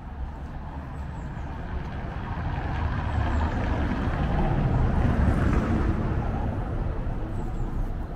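A motor vehicle passing close by, its engine and tyre rumble growing louder to a peak about five seconds in and then fading away.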